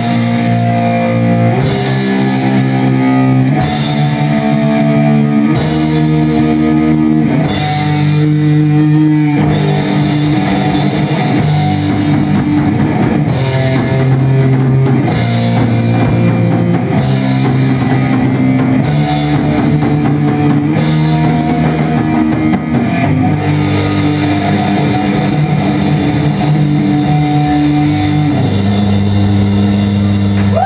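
Rock band playing live at full volume: distorted electric guitar and bass chords, each held for about two seconds before moving to the next, over a drum kit with crashing cymbals.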